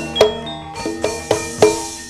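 Javanese gamelan music: ringing struck metallophone notes over sharp drum strokes, the last strokes dying away near the end.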